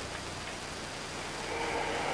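Steady hiss with a faint low hum from an old recording, getting slightly louder near the end.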